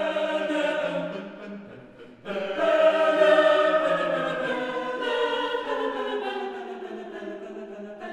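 An a cappella choir singing sustained chords without accompaniment. A first phrase dies away, then a louder, full-voiced chord enters about two seconds in and slowly fades.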